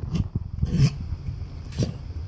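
Golden retriever licking and smacking at its bowl: a few irregular wet mouth sounds, the loudest a little before one second in.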